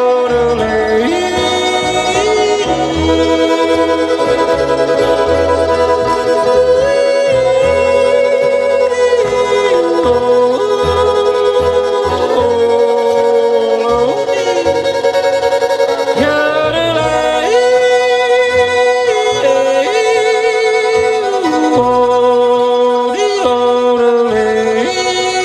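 Bluegrass band playing live on acoustic guitars, fiddle, mandolin and upright bass, with the fiddle carrying a melody line that slides between held notes.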